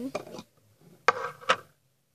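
Two sharp clicks about half a second apart, around the middle, from a glass jar of water beads being handled.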